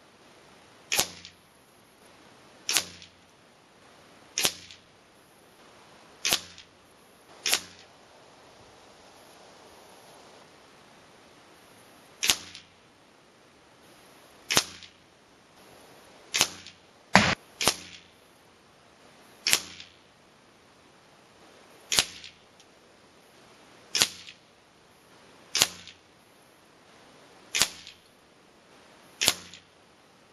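Shots from a .25-caliber Benjamin Marauder PCP air rifle, heard from beside the target at 50 yards as pellets strike the paper and backstop. There are about sixteen sharp cracks, mostly about two seconds apart, with a pause of about five seconds early on. Each crack is followed closely by a fainter tap, and one hit a little past the middle is the loudest and deepest.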